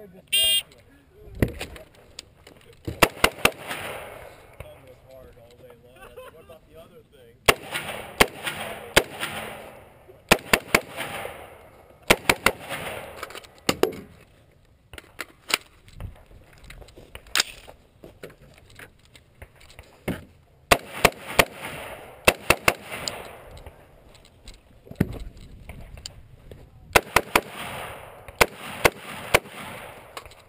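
A shot timer's short start beep, then strings of 5.56 mm rifle shots from a Knight's Armament SR-15, fired in quick pairs and bursts of several shots with pauses between target arrays.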